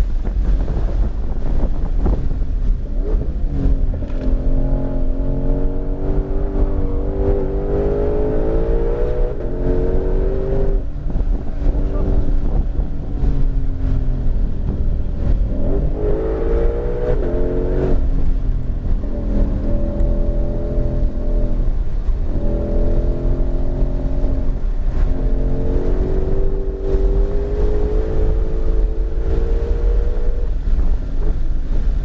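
Ford Mustang Shelby GT500's supercharged V8 heard from inside the cabin at racing speed. The engine note climbs in pitch under full throttle, drops away under braking and downshifts, and climbs again several times, over a heavy constant rumble of road and wind noise.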